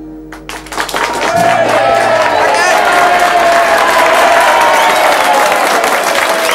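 The last acoustic guitar chord rings and dies away, then about a second in an audience breaks into loud steady applause with cheering voices.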